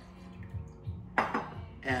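Glass liquor bottle clinking lightly, then set down on the countertop with a sharp knock about a second in, over a faint background music beat.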